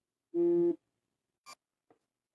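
Live-stream audio breaking up: the sound drops out to dead silence, with a short, steady, buzzy tone at the pitch of a man's voice about a third of a second in and a faint click near the end. This is the sign of a disrupted, glitching connection.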